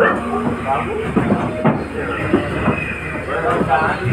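Soundtrack of a 7D theatre show playing loud in the auditorium: a rattling ride-like sound with repeated knocks, and voices over it.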